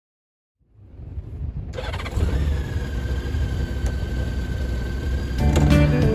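2008 Honda Goldwing's flat-six engine running with a low rumble that fades in about half a second in and holds steady. Country guitar music comes in near the end.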